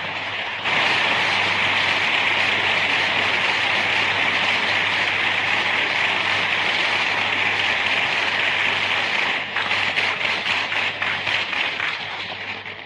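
Audience applause after the song, swelling about a second in and holding steady, then thinning to scattered separate claps near the end. A low steady hum runs underneath.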